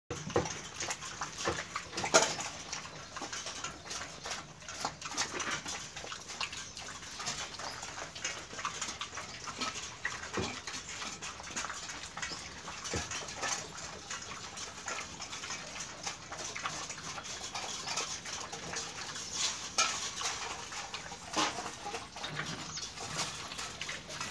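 A dog eating mushy food from a steel bowl: irregular wet lapping and chewing, with scattered clicks and knocks.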